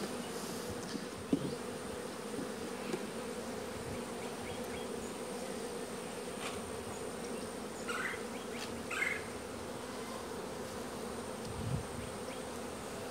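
Honey bees buzzing around an opened hive as its frames are worked, a steady continuous hum.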